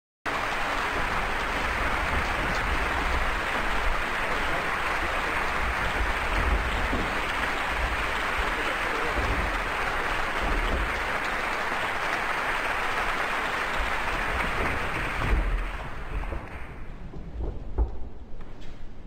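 Audience applauding steadily, then dying away about fifteen seconds in.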